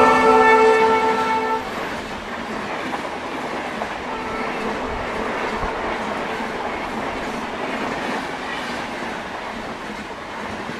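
A WDP4B diesel locomotive's horn, held on one steady chord and loudest at first, cuts off about a second and a half in. After it comes the steady noise of a train of LHB passenger coaches running past at speed.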